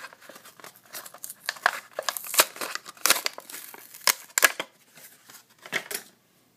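Plastic blister pack on a Hot Wheels card being crinkled and torn open by hand: a quick run of sharp crackles and tearing, loudest in the middle, ending as the die-cast car comes free.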